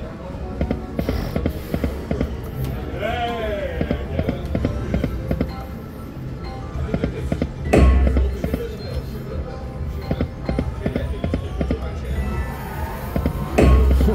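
Huff N' More Puff video slot machine running its game sounds: spin music with a rapid run of clicks and ticks as the reels spin and stop. A loud low thud comes about eight seconds in and again near the end, as new spins start.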